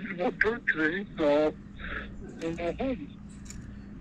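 Faint speech: a voice on a phone call, heard through the phone's speaker.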